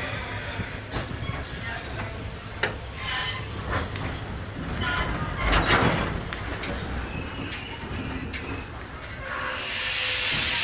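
Passenger train pulling slowly out of a station, heard from aboard: a low rumble with irregular knocks and clanks from the wheels and cars, and a thin high wheel squeal about three-quarters of the way through. Near the end a loud, even hiss sets in.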